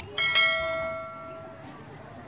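A metallic, bell-like ring, struck sharply and then fading out over about a second and a half.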